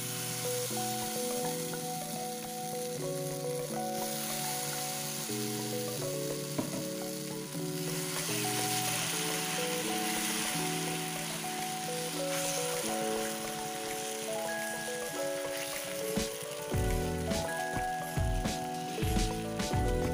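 Thick rice-and-lentil adai batter sizzling in hot oil in a non-stick pan as a spoon spreads it out. Background music plays throughout, with a beat coming in near the end.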